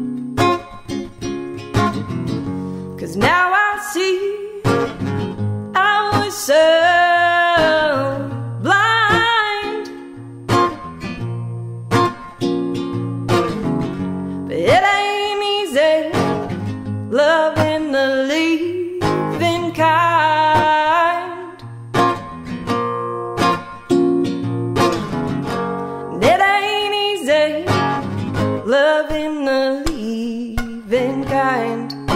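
A woman singing an original song while playing an acoustic guitar, in a live solo performance. She sings in phrases, with the guitar carrying on between them.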